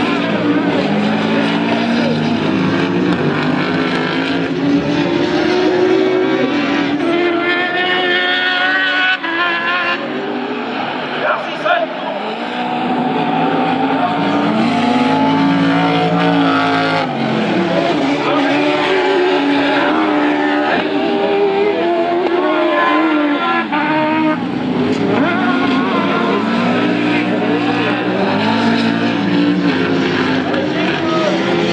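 Autocross Spezial-Cross buggies with engines over 1800 cc racing on a dirt track, their engines repeatedly revving up and dropping away as they accelerate and shift through the corners.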